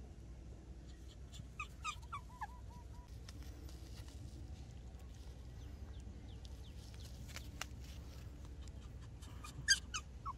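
Short, high-pitched squeaks and yips from a puppy and baby monkey at play. There is a cluster of them about two seconds in and a louder one near the end, with a few light clicks in between.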